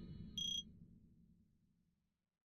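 Tail of an electronic outro jingle: a fading synthesizer decay, then a single short, high ping about a third of a second in.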